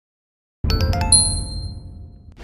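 Channel logo sting: a quick run of about five bell-like chimes over a low rumble, starting about half a second in, then ringing on and fading away.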